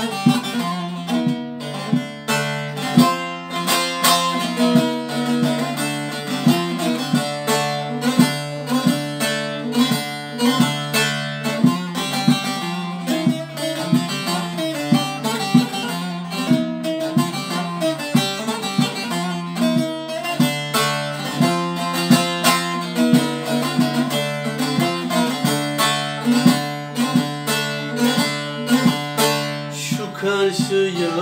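Solo bağlama (Turkish long-necked saz) played with a plectrum: a quick, busy picked melody over steadily ringing open drone strings. It is the instrumental introduction before the folk song's vocal comes in.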